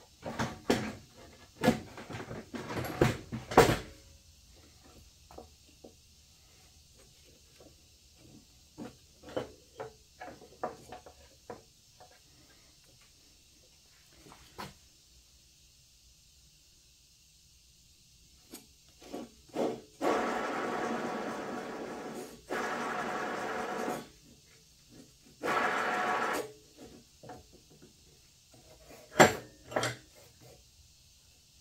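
Metal clanks and knocks as a lawn tractor's steel mower deck is turned over and handled on a metal work stand, loudest in the first few seconds and again near the end. Scattered clicks of parts being handled come in between, and in the second half there are two steady rasping stretches, one of about four seconds and one of about a second.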